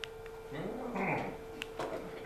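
A brief, low voice-like sound that rises and falls in pitch, starting about half a second in and lasting under a second, over a steady faint hum.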